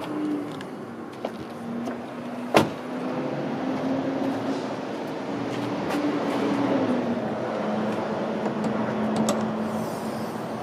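A 2002 Ford Thunderbird's door shut with one loud thump about two and a half seconds in, over a steady hum that wavers a little in pitch. Near the end come a couple of sharp clicks as the hood is unlatched and lifted.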